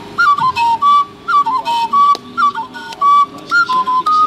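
An Igbo oja flute playing a phrase of short, high notes that step between two or three pitches, several of them starting with a quick upward slide, separated by brief gaps.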